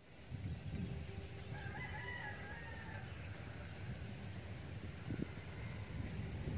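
A rooster crows once, faintly, about a second in, over a steady high-pitched pulsing trill of insects and a low rumble.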